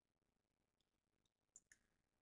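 Near silence, with one faint computer-mouse click about one and a half seconds in.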